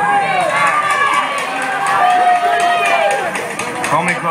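Concert audience shouting and whooping just after a song ends, many voices at once.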